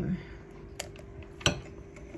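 Faint steady hum with a few light clicks and one sharper glassy knock about one and a half seconds in: a small glass bowl touching the glass mixing bowl as a cracked egg is tipped into creamed butter and sugar.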